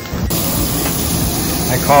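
Meat sizzling on a tabletop Korean barbecue grill: a steady hiss that comes in with a cut just after the start, as background music stops. A man's voice begins near the end.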